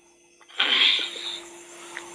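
A short, sudden breathy burst of noise from a person, about half a second in, fading within a second over a faint steady hum.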